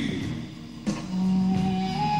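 Heavy rock band playing live: after a short lull, an electric guitar chord is struck about a second in and held.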